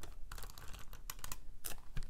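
A handheld tape-runner adhesive pressed along a small cardstock tab: a few sharp clicks over soft paper rustling.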